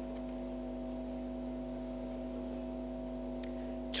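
Steady electrical hum, a few constant tones held without change, with one faint click about three and a half seconds in.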